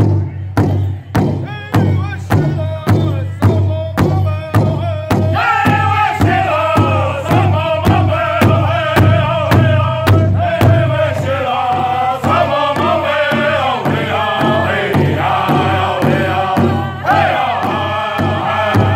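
Powwow drum group singing a Southern-style trot song: several drummers strike a large hide-headed powwow drum in unison, a steady beat of about two strikes a second. High-pitched group singing over the drum comes in about five seconds in.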